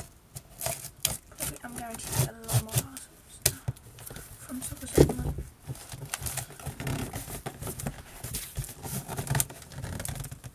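Scissors cutting the packing tape on a cardboard box, and hands working the box open: a run of snips, rustles and crackles, with a sharp knock about halfway through.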